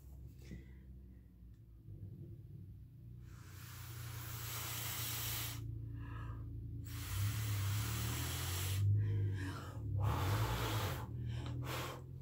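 Breath blown through the cut-off tip of a turkey baster onto wet poured acrylic paint, spreading it into blooms: a breathy hiss in four blows, the first about two seconds long and the later ones shorter, with short pauses between.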